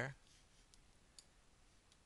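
Near silence with three faint, short computer mouse clicks spread over the two seconds.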